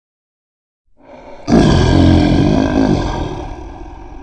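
A lion's roar: after about a second of silence, a short rising growl breaks into one loud roar about a second and a half in, which fades away near the end.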